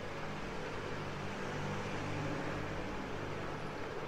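Steady background ambience: an even hiss with a low, constant hum underneath, with no distinct events.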